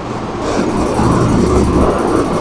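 Low rumble of a motor vehicle, swelling louder about half a second in.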